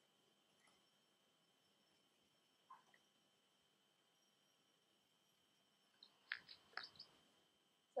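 Near silence: room tone with a faint steady high whine, and a few soft clicks close together near the end.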